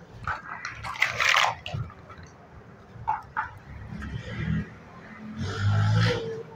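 Large plastic building blocks clicking and clattering as they are handled and pressed onto a stacked tower, with a louder rattle about a second in. A short voice-like sound comes near the end.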